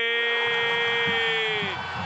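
TV football commentator's long, drawn-out goal cry held on one high pitch, tailing off near the end.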